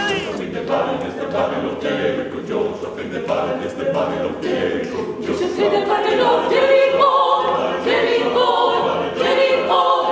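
Mixed choir of men's and women's voices singing together in rehearsal, growing louder about six seconds in.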